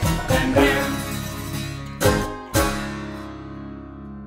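Folk band ending a song on banjo, acoustic guitar, bass and mallet-struck drum: the last bars play, two accented final hits land about two seconds in, half a second apart, and the closing chord then rings out and fades.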